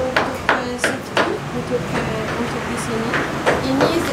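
A series of sharp knocks: about five irregular strikes in the first second and a half, then one more near the end, with background voices underneath.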